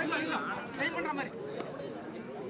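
Several men's voices talking and calling out over one another, crowd and player chatter around the kabaddi court, louder for the first second and quieter after.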